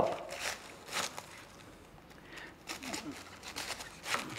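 Large kitchen knife slicing a green cabbage into thin strips on a plastic cutting board: a few faint, irregular cuts, with a small cluster of them near the end.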